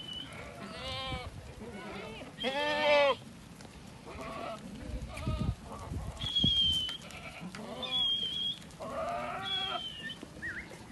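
Aradi goats bleating: about five wavering calls from the herd, the loudest about three seconds in and several more in the last couple of seconds.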